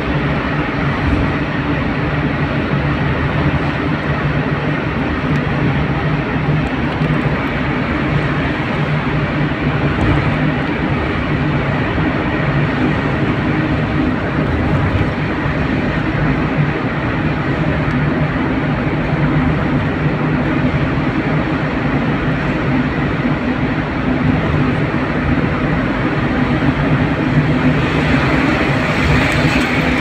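Steady engine and tyre noise heard from inside a vehicle's cabin while driving through a road tunnel, with a constant low engine hum under it. The higher hiss swells near the end.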